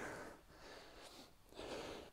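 Near silence, with a faint breath drawn near the end.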